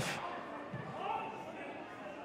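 Quiet football-ground ambience: a low, even hush with a faint distant voice about a second in.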